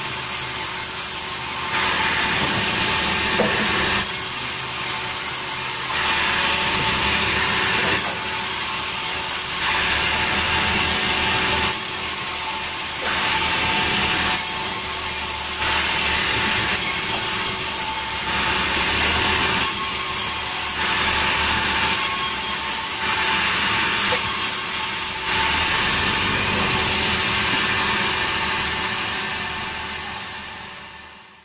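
Sawmill band saw running and cutting through a large beam of very hard berangan wood. Its sound rises and falls in a regular pattern about every two seconds.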